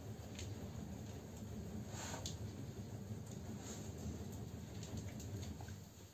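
Faint sounds of a wood stove fire burning damp wood as it is fanned by hand with a sheet of paper: soft swishes and a few light ticks and crackles. The wet wood is slow to catch.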